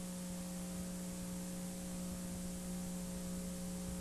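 Steady electrical hum with a constant background hiss, unchanging throughout, with no hoofbeats or other events standing out.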